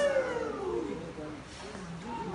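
A drawn-out, high-pitched vocal cry or exclamation, rising and then falling in pitch and fading out about a second in.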